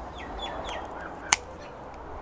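Faint bird chirps, short high calls that drop in pitch, mostly in the first second, with one sharp click a little past a second in.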